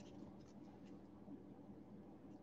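Near silence: room tone with a few faint rustles as a cloth face mask is handled.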